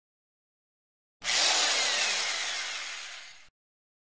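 Logo sound effect: a harsh scraping, sawing-like noise that starts suddenly about a second in and fades away over about two seconds.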